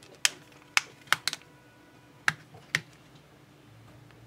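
Sharp plastic clicks, about six in the first three seconds, as the back cover of an OUKITEL C21 smartphone is pressed down along its edges and its clips snap into place.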